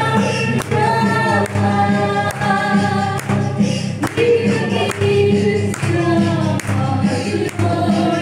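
A group of voices singing a Mizo song together, with a sharp beat keeping time about once a second.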